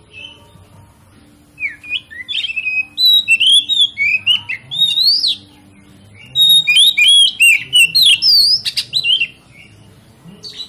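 Oriental magpie-robin (kacer) singing in two loud bursts of rapid, varied whistles and chirps, full of quick rising and falling notes. The first burst starts about a second and a half in, and the second follows a short pause around the middle.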